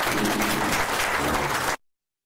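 Audience applause in a lecture hall, a dense patter of many hands clapping, cut off abruptly just before the end.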